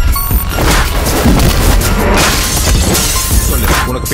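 Loud action-trailer music with a heavy, deep bass, punctuated by sudden impact hits.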